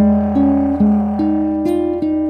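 Jazz archtop guitar played fingerstyle: a line of single plucked notes, about two to three a second, over a low held bass note.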